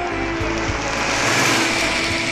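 An open-top jeep driving up close, its engine and road noise swelling to a peak about a second and a half in, then easing off, over a held note of background music.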